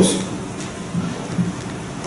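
Steady hiss of room and recording noise during a pause in a man's speech, his voice trailing off at the start.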